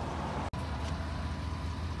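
Steady low rumble of outdoor background noise, cut off for an instant about half a second in where the audio is spliced, with a faint steady high tone after the splice.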